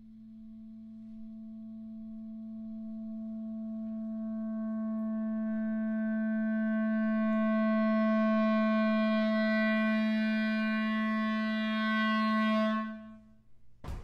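A clarinet sustains one long low note, swelling gradually from very soft to loud over about eight seconds, holding, then cutting off sharply just before the end. A single short, sharp knock follows right after.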